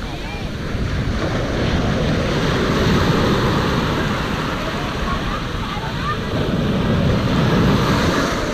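Sea waves breaking and foaming surf washing up the shore close by, a continuous rush that swells louder about two seconds in and again near the end.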